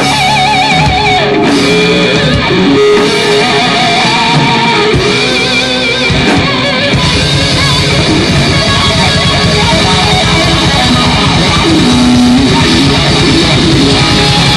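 Live heavy rock band playing an instrumental passage on electric guitars, bass and drum kit. The playing gets denser and heavier about halfway through.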